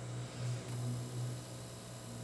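Steady low electrical hum with a faint hiss underneath, wavering slightly in level.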